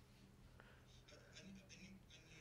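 Near silence: quiet room tone with a low hum and faint scratchy sounds in the second half.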